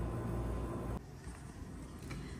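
A steady low rumble that drops away abruptly about a second in, leaving quieter room tone.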